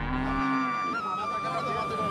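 A cow mooing amid crowd chatter, with a long steady high-pitched tone through the second half.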